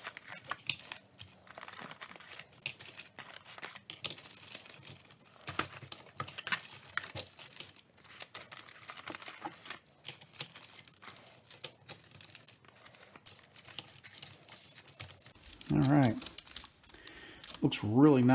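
Wooden hexagonal colored pencils clicking and tapping against each other as they are pulled from a cardboard box and laid in a row on wax paper, with light rustling of paper and cardboard. A brief voice sounds near the end.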